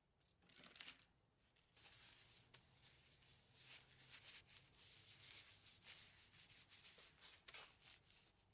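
Faint rubbing of a mineral-oil-soaked paper towel along a maple wooden spatula, oiling the finished wood. After a short swipe near the start, it runs as a string of quick repeated strokes from about two seconds in.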